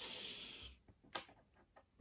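Light handling sounds of small model trench pieces being set down on a cutting mat: a short rustle, then a single sharp click a little after a second in and a few faint ticks.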